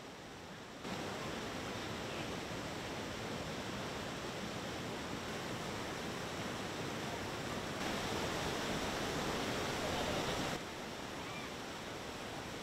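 Fast-flowing floodwater rushing, a steady noise that steps up sharply about a second in, grows louder again around eight seconds, and drops back a little shortly before the end.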